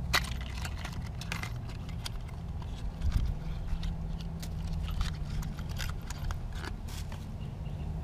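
A new spark plug's cardboard box being handled and opened, and the plug slid out: scattered small clicks, crinkles and scrapes, over a steady low hum.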